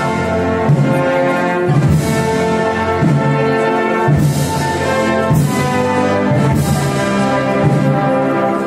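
Banda de música (brass and wind band) playing a Holy Week processional march: full sustained brass chords over a low beat about once a second, with cymbal crashes.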